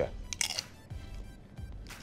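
A crisp papadom crunching as it is bitten, with a sharp crunch about half a second in and another crackle near the end as it is chewed, over soft background music.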